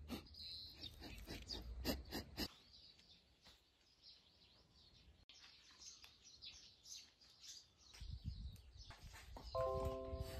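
Faint birds chirping in the background. The first couple of seconds carry clicks and rustling from hands working close to the microphone, and a short pitched tone sounds near the end.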